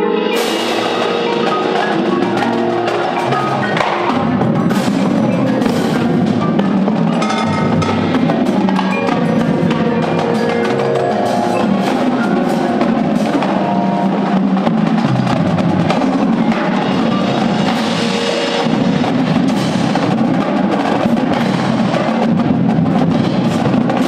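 High school percussion ensemble playing loudly: marimbas and other mallet keyboards with drum kit, cymbals and marching snares, tenors and bass drums. The full ensemble comes in together right at the start, after softer mallet notes, and keeps up dense, rapid strikes.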